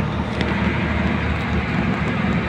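Steady low rumbling background noise, even in level throughout.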